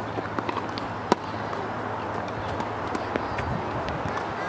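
Tennis ball struck by racket strings in a rally: one sharp, loud hit about a second in, with fainter hits and ball bounces from farther off, over a steady low outdoor hum.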